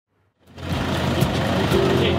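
Vehicle engine running with outdoor street noise, starting about half a second in, with background music coming in under it.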